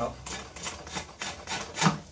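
A dull drawknife taking short chopping cuts along the side of an Osage orange bow stave: a quick series of brief scraping strokes through the wood, about three a second, the loudest near the end.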